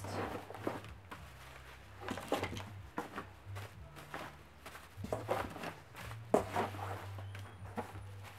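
Plastic packaging rustling and crinkling in short, irregular bursts as bagged items are lifted out of a cardboard box, over a low steady hum.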